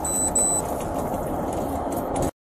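Steady vehicle noise inside a patrol car's cabin. Two short, high electronic beeps sound within the first half second.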